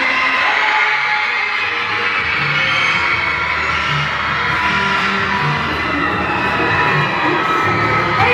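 Large crowd of fans screaming and cheering, many high voices at once in a big echoing hall. A low regular beat runs underneath from a few seconds in.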